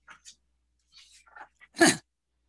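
A single short, sharp vocal burst from a person near the end, with a few faint breath and mouth noises before it.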